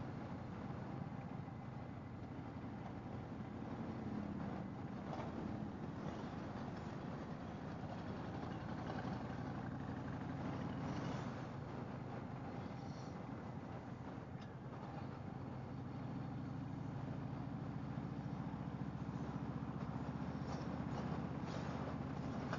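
Harley-Davidson V-twin motorcycle engine running steadily at low town speed, heard from the rider's seat with road and wind noise.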